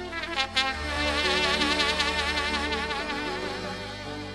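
Background folk music played on brass or wind instruments: a few quick notes, then about a second in a long held note with a wide vibrato, which begins to fade near the end.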